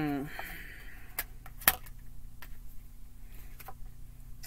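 Tarot cards being handled and laid down on a table: a few light clicks and taps, the loudest a sharp snap about one and a half seconds in.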